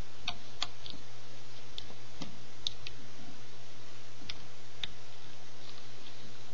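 Light, irregular plastic clicks and snaps as rubber bands are looped and pulled over the pegs of a plastic Rainbow Loom with a hook, about ten over a few seconds, over a steady low hum.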